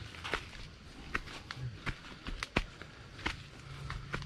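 Footsteps on a dirt footpath: about six or seven uneven steps over a few seconds, each a short scuffing tap.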